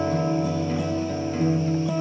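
Acoustic guitar music: held, ringing notes that change a couple of times, over a steady low tone.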